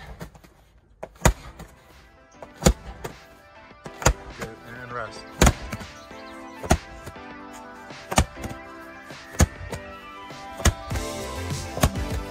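Medicine ball slammed down onto an exercise mat, a sharp thud about every 1.3 seconds, over background music.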